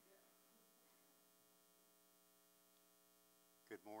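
Near silence: a faint steady electrical hum, with a spoken "Morning" right at the end.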